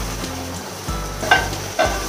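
Sliced ivy gourd (kundru) sizzling as it fries in an oiled pan on a gas stove. There are two short metal clinks a little after halfway and near the end as the steel plate covering the pan is handled.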